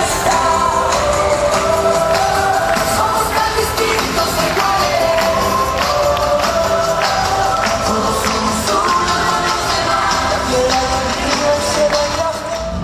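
A children's choir singing a song in unison over instrumental accompaniment with a percussive beat, in a large reverberant hall.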